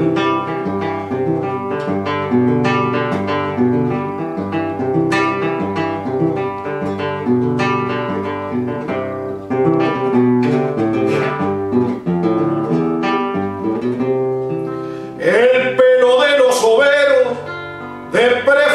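Solo nylon-string classical guitar playing a milonga interlude, single plucked notes over a moving bass line. About three seconds before the end, a man's singing voice comes back in over the guitar.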